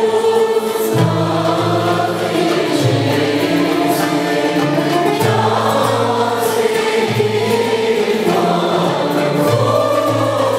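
Classical Turkish music ensemble performing a song: a male soloist and mixed choir singing together with ud, kanun, ney, clarinet, yaylı tanbur and frame drums and darbuka. The music runs on at a steady level, with a low line that moves to a new note about every second.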